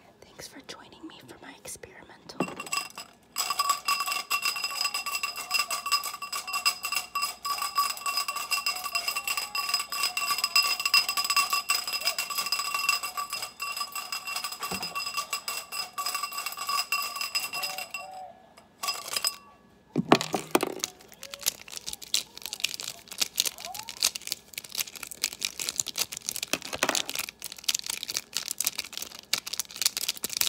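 Markers rattled rapidly in a clear cup, a dense steady clatter with a ringing tone over it, for about fifteen seconds. After a brief pause, a bundle of markers clicks and rubs together in the hands.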